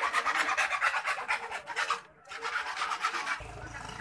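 Handling noise: a rapid rasping rub on the microphone, breaking off briefly about two seconds in. A low steady hum comes in near the end.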